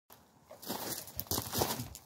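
Close, irregular rustling and crunching, made by someone moving near the microphone. It starts about half a second in and runs in uneven scraps, with a few sharper crunches.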